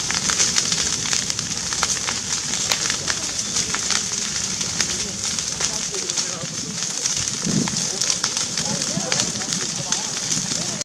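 Wildfire burning through brush and trees: a steady rush of flame with frequent sharp crackles and pops.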